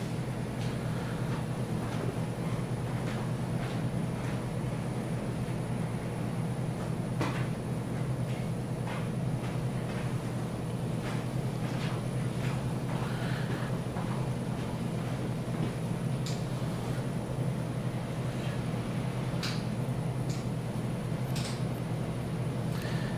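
Steady low room hum, with faint scattered clicks from surgical instruments being handled.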